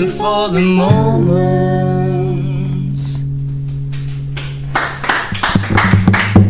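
The close of a live song on electric guitar with singing. A last sung line gives way to a long held note, while the guitar's final chord rings on and slowly fades until it stops about five seconds in.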